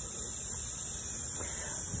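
Steady, high-pitched buzzing of insects in summer heat, with a faint low rumble underneath.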